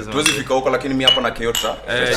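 Drinking glasses and cups clinking together in a toast, with two short ringing chinks about a second and a second and a half in, over murmuring men's voices.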